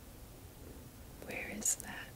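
A quiet pause, then a brief soft whispered utterance about a second and a half in, with a sharp hiss in it.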